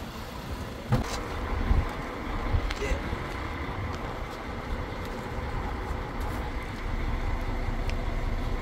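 A couple of sharp knocks about a second in, from climbing down out of a truck cab, then a steady low rumble with faint steady tones underneath.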